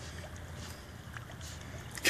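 Quiet lakeside sound: a steady low rumble with faint small water sounds as a toy poodle paddles through the water.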